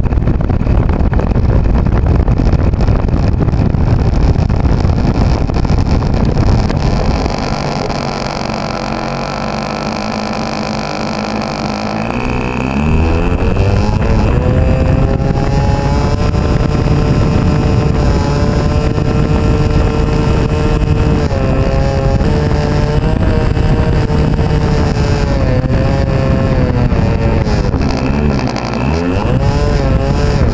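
The nose-mounted glow engine of a Kadet Senior RC plane, heard from an onboard camera as the plane taxis over grass. At first there is a heavy rumble and a low engine note. About twelve seconds in, the engine revs up to a steady higher pitch, then dips briefly and picks up again near the end.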